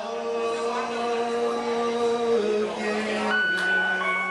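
A man singing a long held note into a microphone over live keyboard backing; the note steps down about two and a half seconds in and is held on, with a higher keyboard tone joining near the end.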